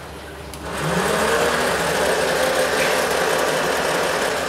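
Laboratory jar-test paddle stirrer switched on: its motor starts about a second in with a rising whine and then runs steadily at high speed, rapidly mixing coagulant into the water samples.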